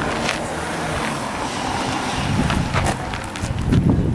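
Outdoor street noise: a vehicle passing, with a steady rumble and a few light knocks.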